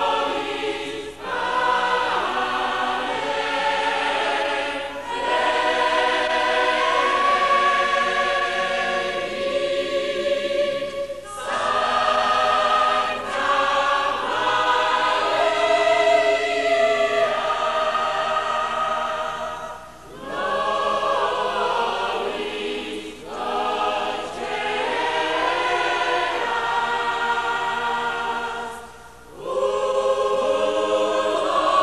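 A choir singing slow, sustained phrases, with brief pauses between phrases.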